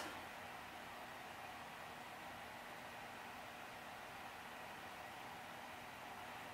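Faint, steady hiss of room tone with no distinct events.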